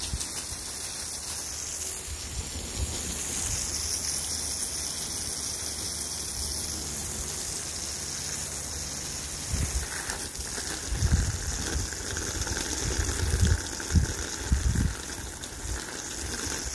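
Steady hiss of water spraying, with a few low thumps in the second half.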